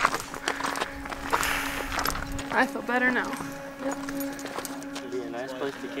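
Footsteps crunching on a rocky dirt mountain trail, with background music holding a steady tone underneath. A short voice sound comes about halfway through.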